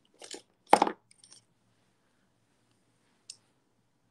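Small hard makeup items clacking as they are handled and set down: a soft pair of clicks just after the start, one sharper, louder clack under a second in, then a few faint ticks and a single brief high tick about three seconds in.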